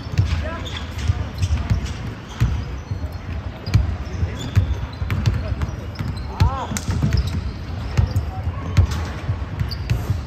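Basketballs bouncing on a hardwood gym floor in a run of repeated thuds, with sneakers squeaking on the court; one clear squeak comes about six and a half seconds in. The big hall gives the thuds a ring.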